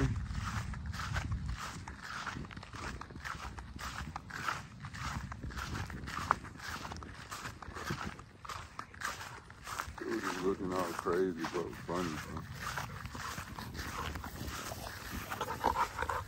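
Footsteps through grass at a steady walking pace, about three steps a second. About ten seconds in there is a brief pitched vocal sound that rises and falls.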